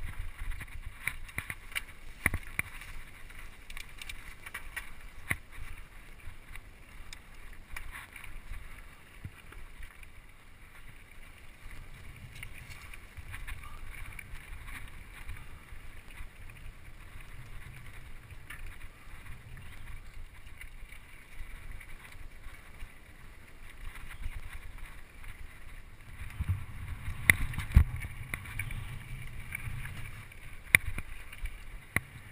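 Mountain bike rattling and clattering as it rolls down a rough, rocky dirt trail, with wind rumbling on the microphone; a run of louder knocks from jolts comes near the end.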